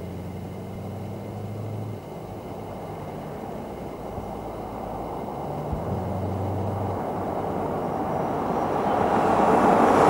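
1971 Dodge Coronet Custom with a big-block V8 approaching through slalom cones, growing steadily louder as it nears. The engine note comes through in two stretches as the driver works the throttle, and tyre and wind noise rise near the end as the car closes in.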